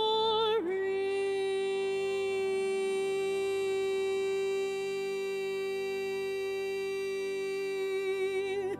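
Church music ending a song: a note sung with vibrato for a moment, then a slightly lower note held long and steady without vibrato.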